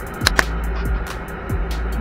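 Forced-air gas burner of a ceramic kiln running: a steady low roar with a faint hum and two sharp crackles in the first half second. The flame has been set to a light reduction, with less air and more fuel.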